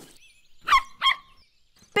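A puppy barking twice, two short yaps about a third of a second apart, at a snake.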